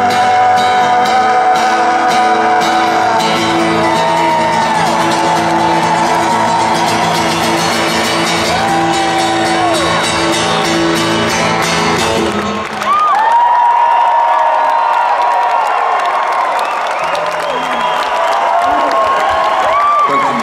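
Amplified Gibson acoustic guitar ringing out the closing chords of a song, with audience whoops over it. About two-thirds of the way through the music stops suddenly and the crowd cheers, whoops and shouts.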